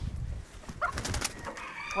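Backyard chickens scuffling: a short call about a second in, then a brief burst of sharp noises as one bird knocks another into the water pan.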